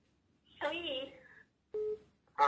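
A person's voice through a phone's loudspeaker about half a second in, then a short, steady telephone tone beep near the end.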